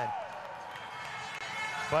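Faint background music with steady held notes over the hum of an indoor pool arena. A man's voice comes in briefly near the end.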